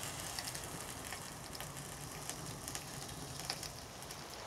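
Fire burning mainly plastic and cardboard in a metal drum fire pit: faint, scattered small crackles and ticks over a low, steady rush.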